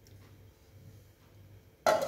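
Quiet, with a faint steady low hum, then near the end one sharp clatter as a glass pot lid is set down on the pan.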